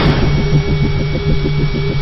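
Produced intro sound effect: a rapid mechanical pulsing, about ten beats a second at a steady pitch, over a thin steady high tone.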